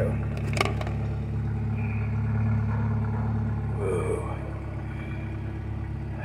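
A Jeep's engine idling steadily, with a few sharp clicks in the first second.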